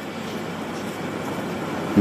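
Steady, even background noise in a room during a pause in a man's speech, with no distinct event.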